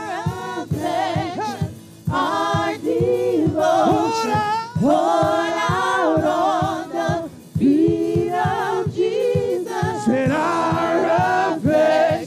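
Live gospel worship singing: women's voices singing with microphones, sustained and bending notes in a choir-like blend, over a steady beat.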